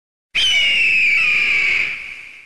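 A bird of prey's single long screech, starting suddenly about a third of a second in and sliding slightly down in pitch, fading near the end.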